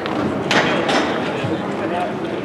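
Ice hockey rink sound: voices of players and spectators echoing in the arena over skates and sticks on the ice, with two short, sharp noises about half a second and a second in.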